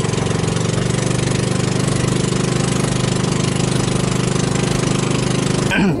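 The small engine of an outrigger bangka running steadily under way, with a steady rushing noise over it; the sound cuts off suddenly near the end.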